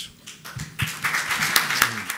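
Audience applauding, starting under a second in after a few light taps.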